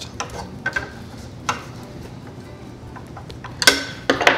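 A few light clicks and taps of plastic parts being handled, with one louder clatter just before the end.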